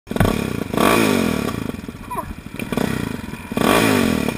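Motorcycle engine revved hard twice, each rev rising and then falling in pitch, about a second in and again near the end.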